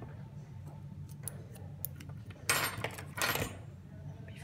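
Small scissors cutting off excess heat-shrink tubing: a few light blade clicks, then two crisp snips about half a second apart, a little past halfway through.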